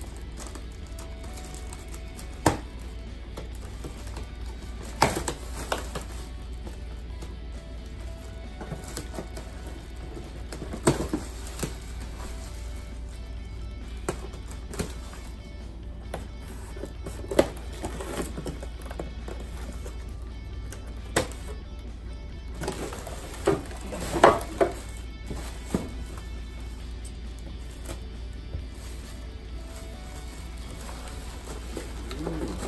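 Scissors snipping and tearing through plastic wrap and cardboard packaging, with crackling plastic and scattered sharp snips and knocks, over faint background music.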